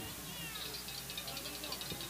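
Faint, distant high-pitched voices calling out across the softball field, with no close speech.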